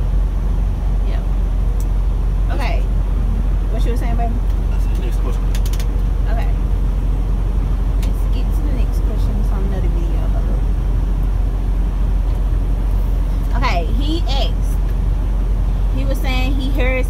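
Steady low drone of a semi-truck cab at highway speed: engine and road noise heard from inside the cab.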